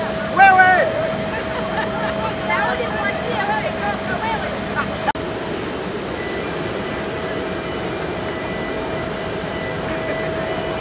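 Steady mechanical drone with a constant high whine from aircraft ground equipment at a parked airliner, with people's voices over it. A voice calls out loudly about half a second in. There is more talk near the middle, and the sound changes abruptly at about five seconds.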